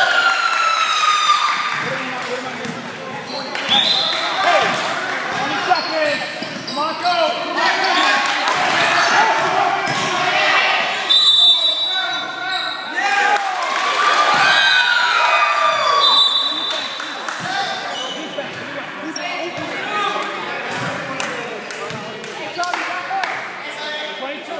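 Basketball bouncing on a hardwood gym floor, with short high sneaker squeaks and voices shouting on the court. The sound echoes around the large hall.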